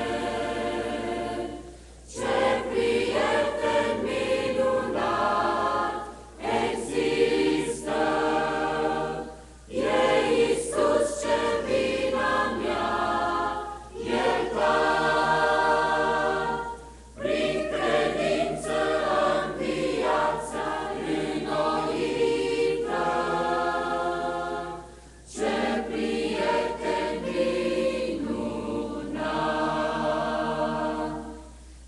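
Mixed church choir of men and women singing together under a conductor, in phrases a few seconds long with brief breaks between them.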